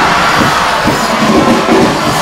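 Live studio audience cheering and clapping loudly.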